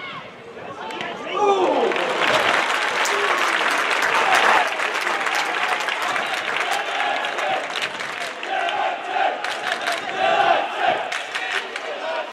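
Football stadium crowd cheering, surging loudly about two seconds in, then carrying on with clapping and raised voices.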